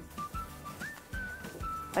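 A short whistled tune: several held notes that step up and down, with one quick upward slide.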